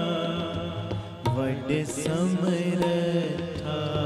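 Sikh shabad kirtan: harmoniums hold the melody over regular tabla strokes. From about a second in, a singer's voice slides through an ornamented phrase.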